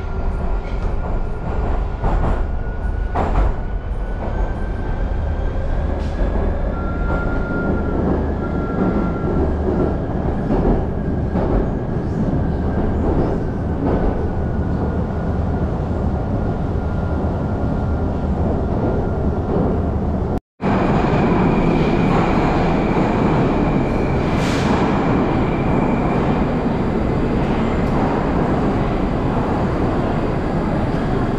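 Moskva-2020 Moscow Metro train running through the tunnel: a steady low rumble with a high drifting whine from the traction drive and occasional clicks over rail joints. About two-thirds in, the sound cuts off abruptly and gives way to a louder, steady rushing train noise with a high whine.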